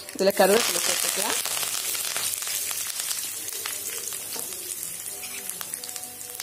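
Hot sesame oil in a kadai sizzling sharply as fresh ingredients go into the tempering of mustard seeds and urad dal. The sizzle starts about half a second in, loudest at first, and slowly dies down.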